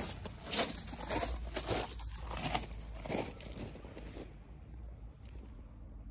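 Footsteps crunching on landscape gravel, about two steps a second, thinning out near the end, over a steady low rumble of wind or handling noise on a phone microphone.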